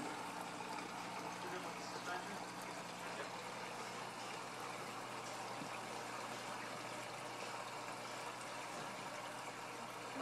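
Aquarium filters and pumps running: a steady trickle of water with a low electrical hum.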